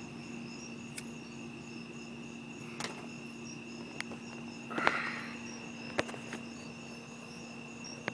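Steady night chorus of crickets chirping, with a few sharp clicks and a short hiss about five seconds in as a tobacco pipe is lit and puffed.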